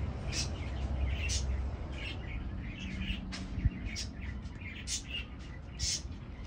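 Small birds chirping, short high chirps about twice a second, with one dull thump a little past halfway.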